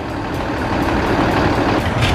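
A truck engine idling close by, a steady low rumble.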